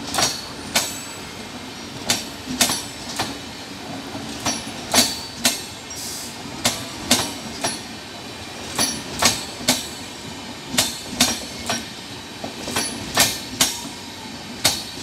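Indian Railways LHB passenger coaches rolling slowly past on departure, their wheels clacking over rail joints in quick pairs and clusters over a steady running rumble.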